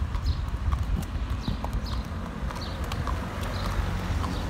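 Horse's hoofbeats, a run of clip-clops over a steady low rumble.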